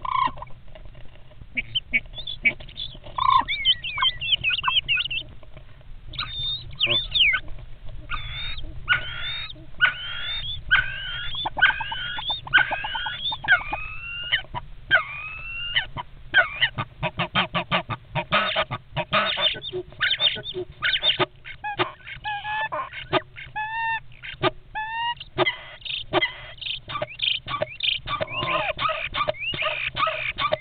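Two common starlings fighting inside a wooden nest box: harsh squawks and rising and falling whistled calls mixed with rapid sharp clicks. The clicking grows denser about halfway through.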